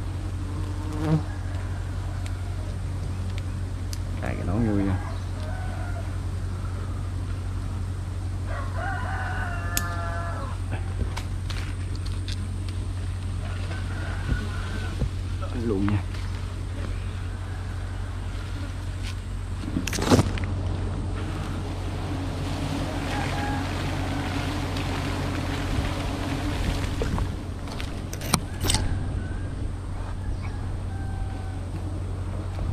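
A steady low rumble, with a bird calling a few times and a sharp knock about twenty seconds in.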